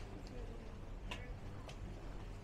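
Footsteps clicking on the tiled floor of a covered market, three sharp irregular steps over a steady low hum and faint voices.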